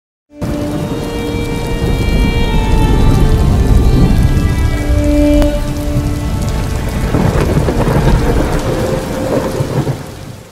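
Loud rain and thunder sound effect with several held, eerie tones laid over it. It starts abruptly just after the start and drops away at the end.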